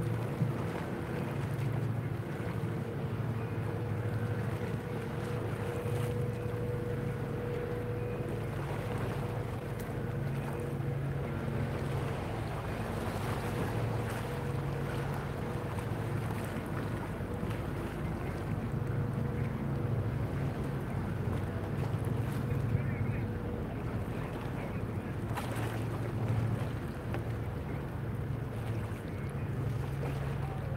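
Steady low drone of the Wightlink hybrid car ferry 'Victoria of Wight' running its engines as it pulls away close by, with a faint whine fading out about eight seconds in. Wind buffets the microphone.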